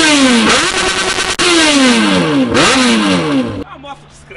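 Yamaha XJ6's inline-four engine revved at a standstill, the throttle blipped several times in a row so the pitch leaps up and falls back each time. The sound cuts off abruptly shortly before the end.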